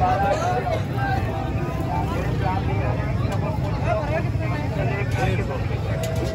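Busy street-market hubbub: several voices talking at once over a steady low rumble of traffic.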